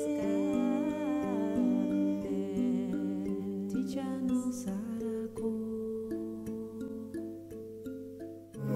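A woman singing a slow, wordless melody with a wavering voice over long held instrumental notes in a world-chamber-music piece. The music dies away toward the end.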